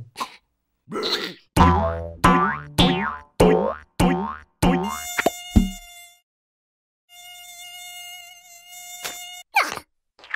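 Cartoon mosquito buzzing: a steady, high, whining buzz that starts about halfway in, stops for a moment, then comes back until shortly before the end. Before it comes a quick run of about six falling swoop sounds over a low hum.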